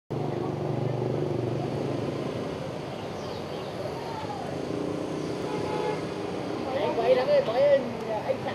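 Street traffic noise: vehicle engines running and a horn tooting. A person's voice comes up loud near the end.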